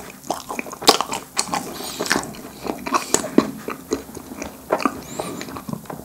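Close-miked chewing of a fish-shaped pastry snack, with a run of crisp, irregular crackles; the loudest crunch comes about a second in.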